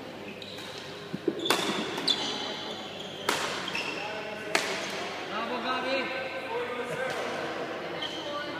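Badminton rackets striking a shuttlecock in a rally: four sharp hits in the first half, echoing in a large hall.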